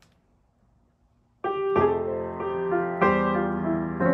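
1979 Steinway Model M grand piano, its action rebushed with felt in place of the old Teflon bushings and fully regulated, played in full chords. The chords begin about a second and a half in, after a short near-silent pause, and each new chord rings over the last.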